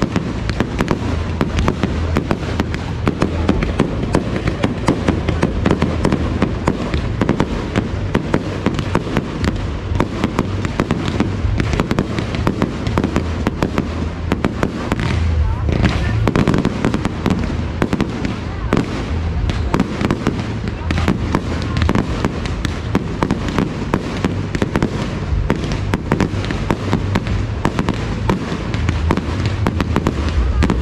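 Fireworks display: aerial shells bursting in quick, continuous succession, a dense run of bangs and crackle many times a second.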